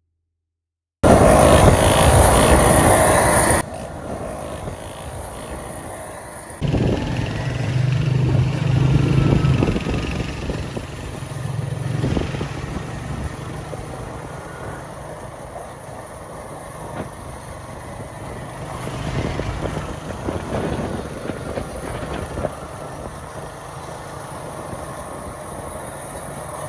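A small motorcycle engine running as it rides along, its low hum rising and falling. Sound starts abruptly about a second in with a loud rush of noise for the first few seconds.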